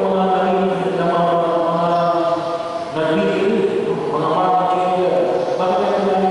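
A man's voice chanting a liturgical prayer into a microphone on a steady reciting tone in long, held phrases, with a short pause for breath about three seconds in.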